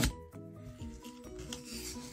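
Quiet background music holding soft, steady notes that change every fraction of a second, with faint rubbing of a foil Pokémon booster pack being handled.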